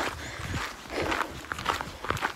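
A hiker's footsteps while walking, a few steps heard in a pause between speech.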